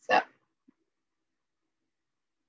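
A woman's voice saying the single short word "so" at the very start, then silence.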